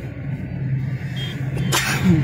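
Car engine and tyre noise heard from inside a moving car: a steady low drone, with a short hissing burst near the end.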